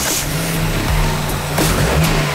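A car's engine running, with electronic background music and its bass line over it.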